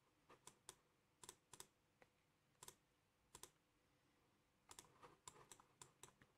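Faint, irregular computer clicks from a mouse and keys being worked, often in quick pairs, with a quicker run of clicks near the end.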